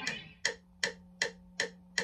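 Metronome clicking at an even tempo, about two and a half clicks a second, as the last electric guitar chord dies away at the start. A faint steady amp hum runs underneath.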